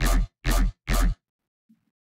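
Heavy, wonky dubstep bass synthesized in Xfer Serum, played through a post-processing effects chain: three short notes about half a second apart with a deep sub, stopping a little over a second in. Very meaty-sounding.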